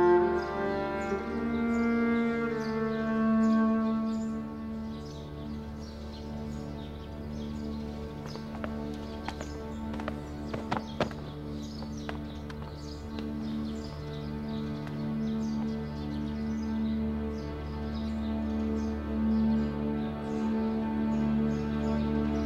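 Background score of slow bowed strings holding low sustained notes, with a higher melody over them in the first couple of seconds. A few short sharp clicks come about ten seconds in.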